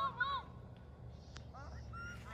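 Distant children's voices shouting and calling out across a ball field in short, high, rising-and-falling yells, with a single sharp click about one and a half seconds in.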